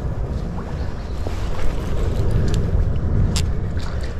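Steady low rumble of noise on a body-worn camera microphone, with a few faint clicks near the end.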